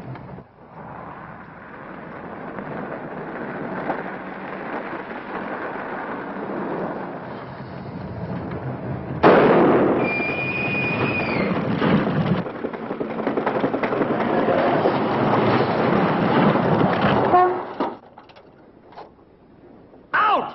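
A car driving: engine and road noise that build steadily, then turn much louder about nine seconds in, with a brief high whine, before dropping away sharply near the end.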